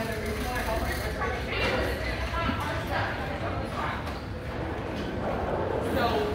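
Indistinct chatter of several people talking at once, over a low steady room rumble.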